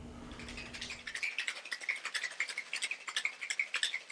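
A rapid, uneven run of light, dry clicks and ticks, several a second. It begins about a second in, after faint room tone.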